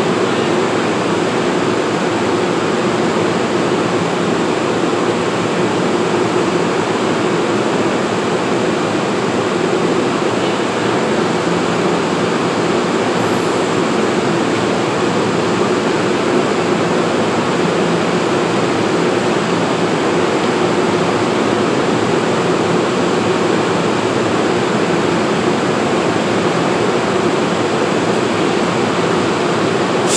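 Steady, loud rushing noise with an even hum underneath from a standing NJ Transit bilevel train at the platform, its onboard equipment running while the train waits.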